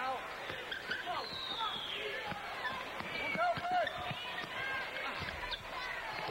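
Basketball bouncing on a hardwood court, with several separate bounces, over arena crowd noise and voices.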